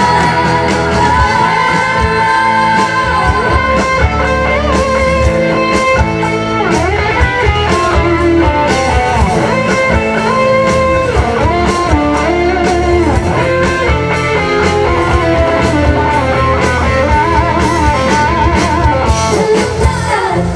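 Live band playing a pop song with a steady beat, guitar to the fore, and a woman singing over it into a microphone.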